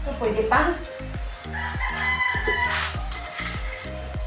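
An animal's loud call in two parts: a short rising note about a quarter second in, then a long held note lasting over a second. Background music with a steady beat runs underneath.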